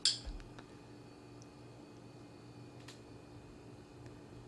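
Laptop keyboard and touchpad clicks: a sharp click right at the start, a few lighter ones just after, and one faint click near three seconds, over a faint steady hum.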